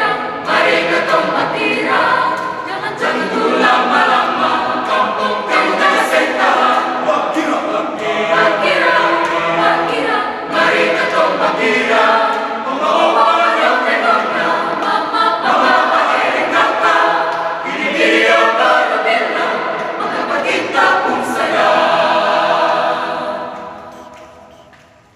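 Mixed choir of young men and women singing in several parts, unaccompanied. The song ends on a held chord that dies away near the end.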